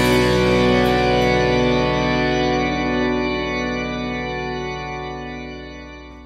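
The final chord of a Spanish-language rock song held on an organ-like keyboard, ringing steadily and then fading out over the last few seconds.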